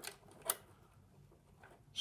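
One short metallic click about half a second in, as the small screw is set into the steel needle plate of a Brother sewing and embroidery machine.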